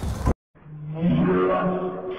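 An edited-in comedy sound effect: after an abrupt cut to silence, a long, low roar-like sound with a fairly steady pitch comes in about half a second in and holds.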